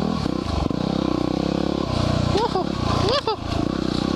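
Yamaha WR250R's 250 cc single-cylinder four-stroke engine running under throttle on a dirt trail, with wind noise. About two and three seconds in, a voice gives short rising-and-falling calls over the engine.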